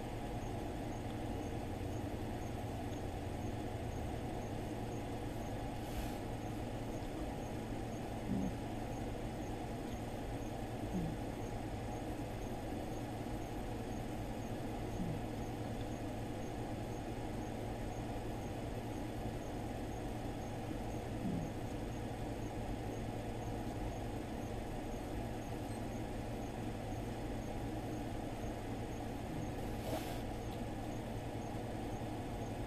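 Steady low background hum of room noise, with a few faint soft sounds scattered through it.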